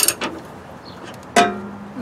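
Socket wrench on a long steel extension loosening a vehicle frame bolt: a sharp metal click at the start with a few small ticks. About one and a half seconds in comes a metal clank that rings on with a steady tone.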